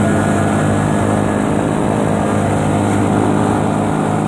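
Yamaha Vixion's 150 cc single-cylinder engine running at a steady speed while cruising, with a steady drone and the rush of wind and road noise.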